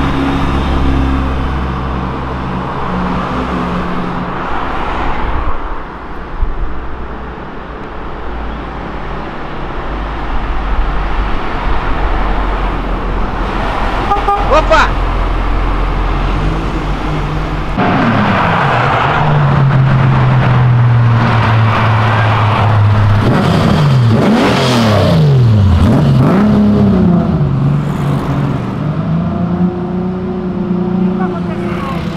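Cars driving past on a city street, engines running. From about eighteen seconds in one engine gets louder and is revved up and down several times.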